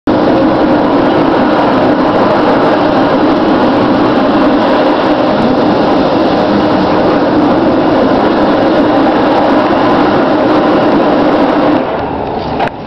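Loud, steady rushing sound of ocean surf, played over the venue's sound system with the intro footage, cutting off sharply near the end.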